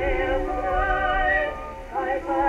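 An early acoustic recording of a singer with heavy vibrato, played on a 1914 Victrola VV-X wind-up phonograph, thin and narrow in range with nothing above the upper midrange. The voice breaks off briefly between phrases near the end, over a low rumble.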